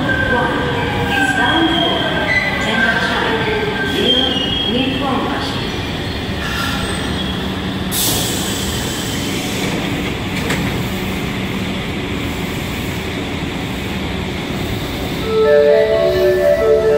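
Osaka Metro Sakaisuji Line 66-series train pulling into an underground station and braking to a stop: its motor whine falls in pitch over the first five seconds. About eight seconds in comes a short hiss, and the halted train then hums steadily. Near the end a platform chime melody begins.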